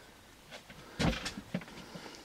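A single short knock about a second in, followed by a couple of faint clicks, over quiet room tone.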